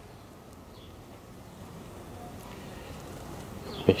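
Honey bees buzzing steadily around an open hive and a lifted brood frame.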